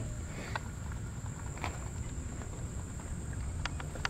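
Quiet outdoor background: a low rumble with a steady high-pitched insect buzz, and a few faint clicks as the camera is carried around the car.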